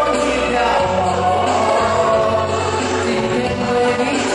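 A man singing a pop song into a microphone over a recorded backing track, amplified through a hall's speakers.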